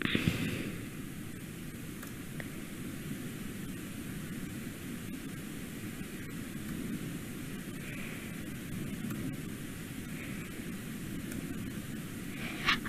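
Steady background hiss with a low rumble beneath it, and a brief louder noise right at the start.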